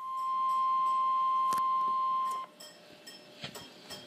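NOAA Weather Radio warning alarm tone (the 1050 Hz alert tone) played through a weather radio receiver's speaker. It is one steady high beep held about two and a half seconds that then cuts off, signalling that an alert message (a flash flood watch) follows. Faint clicks and room noise come after it.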